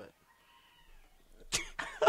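A quiet pause with faint room tone, then about one and a half seconds in a person's sudden, loud, cough-like outburst of breath, followed by a couple of shorter bursts.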